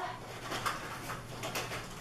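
Quiet handling noise of cards being sorted in a wicker basket: a few faint soft clicks and rustles over a low steady room hum.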